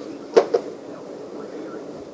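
Two quick knocks about a fifth of a second apart as things are set down on a bed tray laid with plastic syringes, over steady low room noise.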